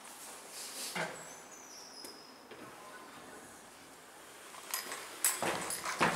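Inside a Kone EcoDisc elevator car with its doors shut: quiet, with a soft knock about a second in and a faint high whine soon after. Then a cluster of clicks and rustles near the end.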